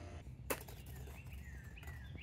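Faint outdoor ambience with a steady low rumble, a single click about half a second in, then birds chirping in short falling notes.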